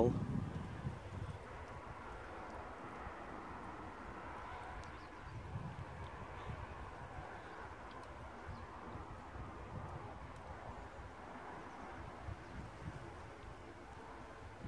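Faint steady trickle of water running into a 1939 Bolding 3-gallon urinal cistern while it fills toward its siphon flush.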